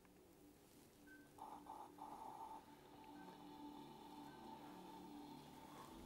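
Faint music playing from a Powertec i-Compact welding machine's small built-in speaker as a video plays on its screen, starting about a second and a half in with a few short notes and then held tones.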